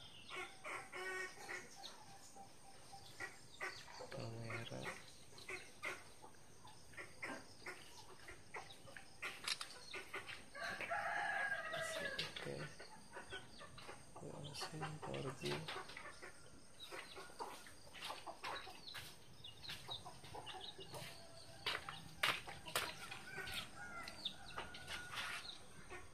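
Bird calls in the background, with one long, loud call about eleven seconds in, among scattered light clicks.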